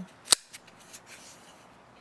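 Kershaw Compound 1940X folding knife flicked open by its flipper: the SpeedSafe-assisted blade snaps open and locks with one sharp click, followed by a few faint ticks of handling.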